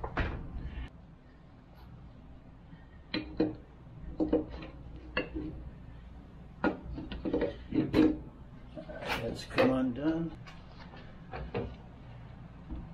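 Scattered metallic clicks and knocks of a hand wrench working the mount bolt of a 1982 Honda Goldwing GL1100's rear shock absorber, with some indistinct mumbling in between.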